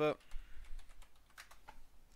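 Computer keyboard typing: a quick, irregular run of key clicks as a password is entered into an archive's password prompt.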